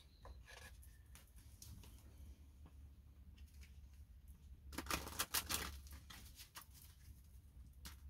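A deck of cards being handled and shuffled by hand: a quick run of soft card flicks about five seconds in, then a few lighter clicks, over a faint low hum.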